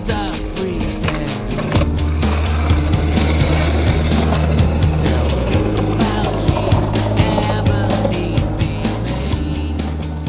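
Skateboard wheels rolling over rough concrete, with a low rumble that swells through the middle seconds, under music with a steady beat.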